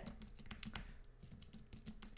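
Typing on a computer keyboard: a quick, uneven run of faint key clicks as random letters are tapped out.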